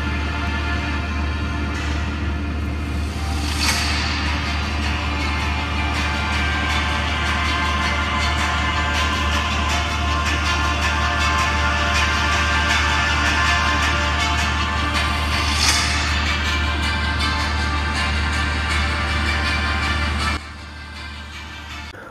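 A music track playing from the Vivo V25 smartphone's loudspeaker in a speaker test. The music drops sharply to a lower level about two seconds before the end.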